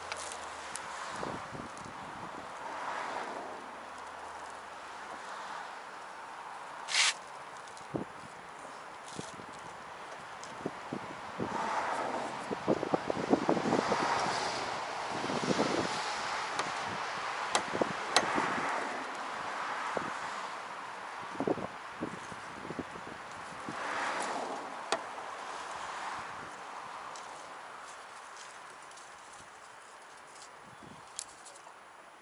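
Metal scraping and clicking as a homemade flat sheet-metal tool is worked under the rear edge of a 1979 Corvette's stuck hood to reach the latch. A sharp knock comes about seven seconds in, and the scraping is busiest in the middle, over a steady background hiss.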